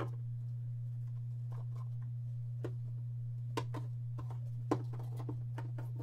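Hands handling a trading-card box and a stack of cards: a few soft, scattered clicks and taps over a steady low hum.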